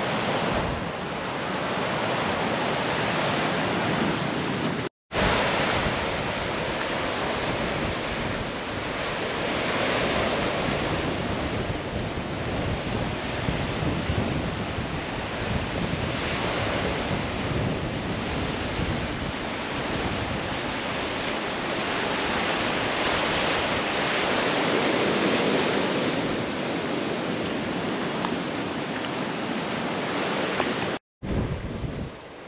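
Ocean surf washing over a rocky shore, a steady rushing noise that swells and eases, mixed with wind buffeting the microphone. The sound cuts out completely for a moment about five seconds in.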